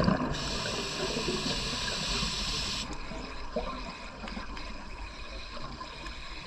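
A scuba diver's regulator hissing through one in-breath lasting about two and a half seconds and cutting off sharply, over the low, steady wash of the water.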